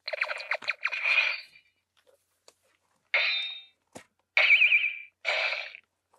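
Electronic sound effects played through the small built-in speaker of a TAMASHII Lab Laser Blade toy sword: a thin, tinny series of short bursts, with a warbling tone a little past the middle.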